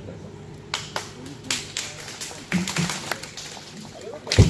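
Hand claps: a few people clapping, sharp and slightly uneven, a few claps a second, starting about a second in.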